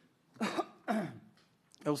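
A man coughing twice to clear his throat, two short coughs about half a second apart, before his speech resumes near the end.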